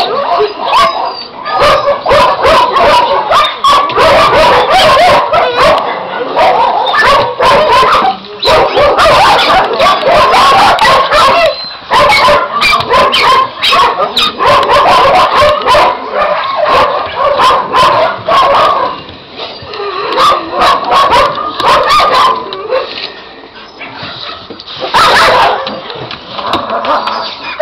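Several kennelled dogs barking continuously, their calls overlapping into a dense chorus that eases off briefly twice in the later part.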